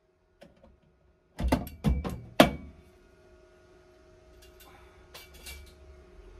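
Four sharp metal knocks and clanks in quick succession, then a few lighter clicks, as a long steel clamp bar is unclamped and lifted off a car's welded inner sill. A faint steady hum runs underneath.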